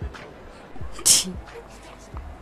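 A short, sharp breathy burst from a person's voice about a second in, like a sneeze or a forceful exhalation.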